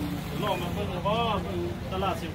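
Brief speech over a steady low hum.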